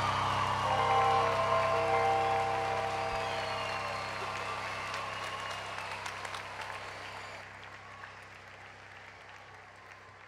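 Audience applause, with a live band's final chord on electric guitar and keyboard ringing out under it for the first couple of seconds. The applause then fades away gradually.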